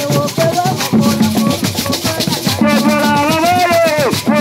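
Ewe Agbadza drum ensemble playing: hand drums, a struck bell and rattles keep a fast, dense, steady rhythm, with group singing over it that grows stronger in the second half.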